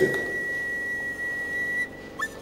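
A steady high-pitched whistle-like tone from the film's background score, held on one pitch and breaking off shortly before the end.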